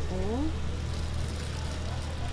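A person's voice, briefly, rising in pitch near the start, over a steady low hum that continues throughout.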